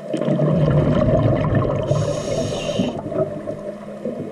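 Scuba diver's breath underwater: a loud, low, bubbling rumble of exhaled air leaving the regulator for about three seconds, with a hiss from the regulator joining in the middle.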